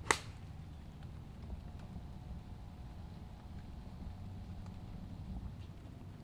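A single sharp click of a Pure Spin gap wedge striking a golf ball on a full swing, about a tenth of a second in, followed by a faint low rumble.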